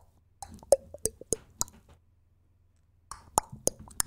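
A man making mouth sounds: quick lip pops and tongue clicks in two short flurries with a pause between, imitating a musical breakdown.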